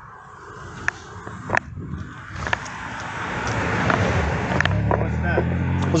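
Road and traffic noise picked up by a police body-worn camera, with a few sharp knocks from the camera and the officer's movement. About two-thirds of the way in, a low vehicle engine hum comes up and grows louder.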